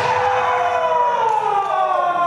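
A kendo fighter's kiai: one long, high shout that rises slightly in pitch and then slides down toward the end.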